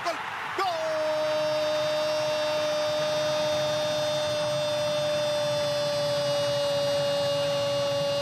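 A Spanish-language football commentator's long drawn-out "gooool" cry for a goal, held on one note for about eight seconds. It starts about half a second in with a quick slide down, then sinks only slightly.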